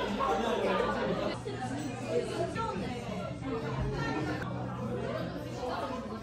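Indistinct background chatter of several café customers talking at once, with a low steady hum underneath.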